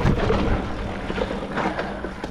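Mountain bike rolling fast over a rough, rooty dirt trail: tyres on dirt with dense, irregular knocking and rattling from the bike as it takes the bumps.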